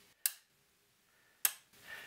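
Small metal toggle power switch on a tube preamp chassis flicked twice: two sharp clicks a little over a second apart.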